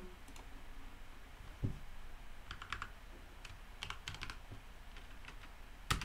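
Faint computer keyboard typing: a handful of scattered keystroke clicks in the second half, after a soft low thump.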